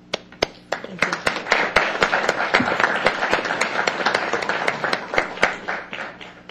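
Applause: a few scattered claps at first, building to steady clapping about a second in, then tapering off near the end.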